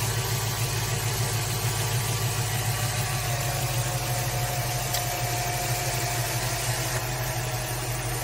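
A Jeep's 5.7-litre HEMI V8 idling steadily, running on oil dosed with ProLube treatment to see whether it idles smoother. A faint steady whine joins about three seconds in.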